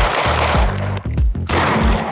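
Semi-automatic pistol fired several times in quick succession, the shots following one another at a steady cadence.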